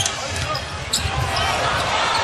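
A basketball dribbled on a hardwood court, a series of low bounces at uneven spacing, over the noise of an indoor arena.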